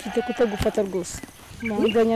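A person's voice: a short stretch of speech, then long, steady held notes, like a prayer being sung.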